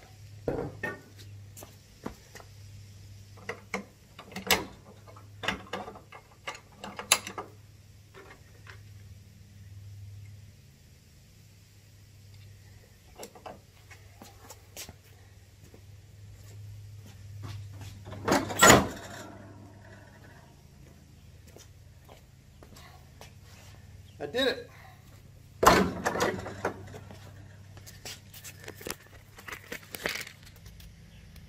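Scattered knocks and clanks of metal parts being handled, with two loud impacts, one a little past halfway and one near the end, over a steady low hum.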